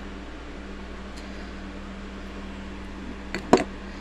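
A steady background hum throughout, with a couple of short knocks about three and a half seconds in as a glass coffee jar is set down on a table.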